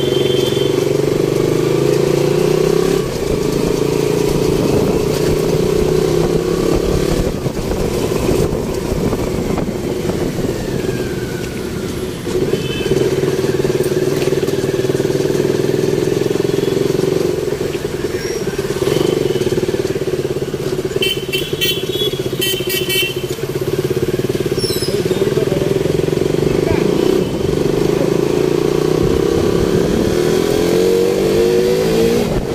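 Small motorbike engine running steadily under way, heard from on board. A brief burst of high-pitched beeping comes about three-quarters of the way through.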